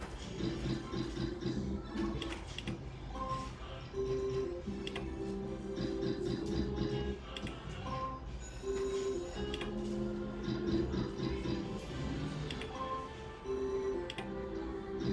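Novoline video slot machine playing its electronic game tune during free spins, a melody of held notes with regular clicks as the reels spin and stop.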